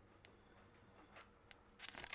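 Near silence, with a few faint clicks of fingernails picking at the edge of a stuck paper sticker on a sticker sheet.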